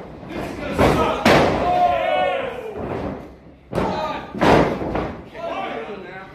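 Heavy thuds of wrestlers' bodies and feet hitting the canvas of a wrestling ring, about four of them, with a drawn-out shout that falls in pitch between them.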